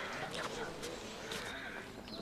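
A horse close by, its hooves knocking a couple of times, under faint background voices.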